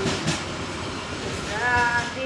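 Freight train wagons rolling away over the rails, a steady rumble with wheel clickety-clack. A brief wavering, pitched tone rises in near the end.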